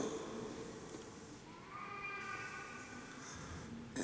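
Quiet, reverberant cathedral room tone, with the echo of the last spoken words dying away at the start. About one and a half seconds in, a faint, drawn-out high cry-like tone sounds for roughly a second.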